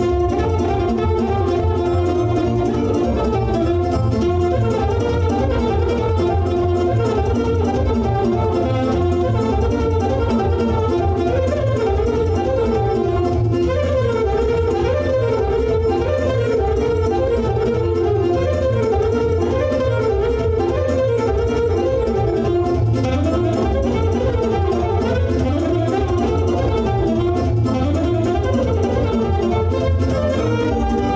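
Instrumental Romanian folk music played live: a saxophone plays a busy, ornamented melody over a Korg Pa4X arranger keyboard's accompaniment with a steady bass line.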